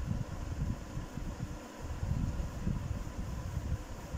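A low, uneven rumble of moving air buffeting the microphone.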